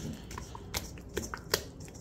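A ball of bread dough being turned by hand in an olive-oiled stainless steel bowl: quiet, wet squishing with a few scattered light clicks.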